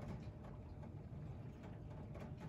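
Quiet room noise with a low hum and a few faint ticks, the kind of light handling made by holding a cardboard box.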